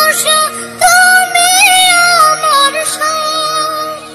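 A solo voice singing a Bengali Islamic gojol (devotional song): a short phrase, a brief pause about half a second in, then one long held, ornamented note that slowly falls, over steady sustained background tones.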